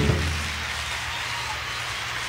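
Concert audience applauding as the band's final chord cuts off, an even clapping wash over a low hum.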